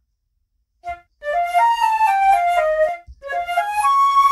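Solo flute melody played dry, without reverb: a short note about a second in, then a phrase that steps up and back down, a brief gap, and a second phrase rising to a held high note near the end.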